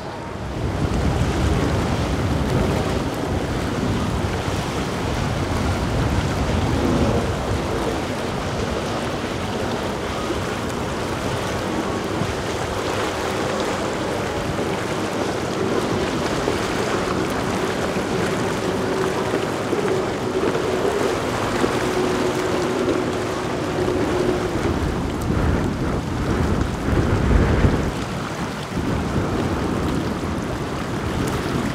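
Motor yachts running past on the water: a low engine drone and the wash of their wakes under steady wind rumble on the microphone.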